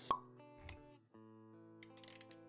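Animated logo intro jingle: a sharp pop just after the start, a soft low thump, then held musical notes.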